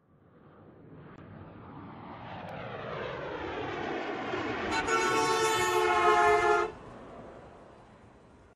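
Logo intro sting: a swelling, sweeping sound that builds for about five seconds into a loud held chord, which cuts off abruptly near the end, leaving a short fading tail.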